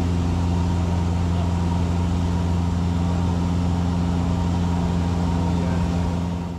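Cessna 172's piston engine and propeller droning steadily in flight: a constant low hum with no change in pitch, over a steady rush of air.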